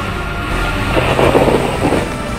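Background music continues under a car sound effect for a toy police car driving in. A noisy rush swells about halfway through, lasts about a second, then fades.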